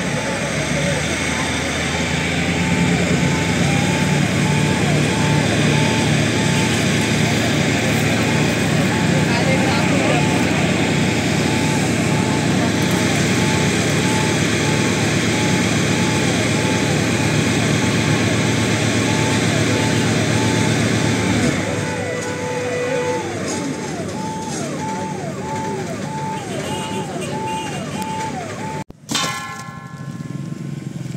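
Fire engine's electronic siren yelping up and down, about two cycles a second, over the steady rumble of the engine and pump and the hiss of the water jet. The rumble and hiss drop away about two-thirds of the way through, leaving the siren.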